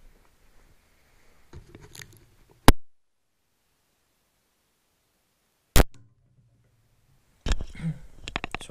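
Handling noise on a microphone cable, then a loud click as the stereo microphone is unplugged from the GoPro mic adapter's aux jack, and the audio drops out to dead silence. About three seconds later a second click as the lavalier mic is plugged in, followed by a faint low hum and then close rustling as the lavalier is handled.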